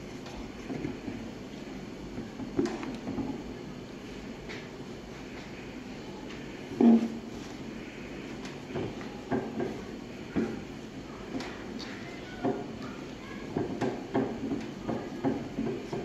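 Stiff, rigidized ceramic fiber blanket sheets being pushed and fitted inside a sheet-steel forge box: irregular knocks and scuffs of handling against the metal, with one louder thump about seven seconds in.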